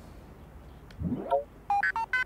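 Electronic chat-message notification sound effect: a quick rising swoop about a second in, then a run of short computer bleeps at stepped pitches, signalling an incoming message.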